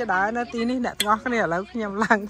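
A person talking in short phrases, with one sharp click or clink about halfway through.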